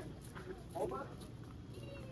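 Quiet grocery-store background: a faint voice is heard briefly about a second in, over a low steady hum.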